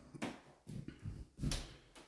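Three faint, soft footsteps on the floor, about two-thirds of a second apart, as someone walks into a small room.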